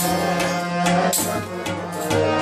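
Harmonium and tabla playing Pakistani music: sustained harmonium notes with sharp tabla strokes, and deep bass-drum tones from the bayan in the second half.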